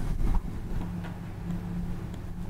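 Room tone: a steady low hum with a faint hiss.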